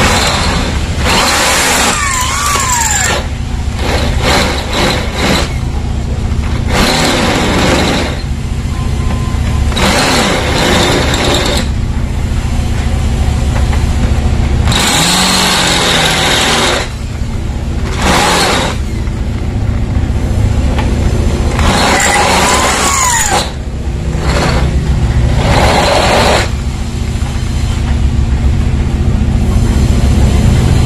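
Corded electric hand drill with a 10 mm bit boring into an old metal door hinge, the bit grinding on the metal in repeated bursts of a second or two over a steady low hum. The hole is bored only partway, to form a sharp cutting edge.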